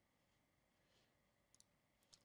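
Near silence: room tone, with a faint single click near the end.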